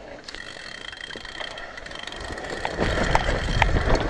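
Mountain bike coasting fast down a rough dirt trail, getting louder as it picks up speed, with a steady high buzz and sharp clatters and knocks as it rattles over bumps. From about halfway, low wind rumble on the microphone builds up.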